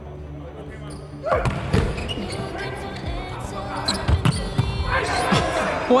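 Volleyball rally in a large hall: after a faint bed of steady music, the serve is struck about a second in, followed by further sharp hand-on-ball smacks of passes, sets and attacks, with players' shouts between them.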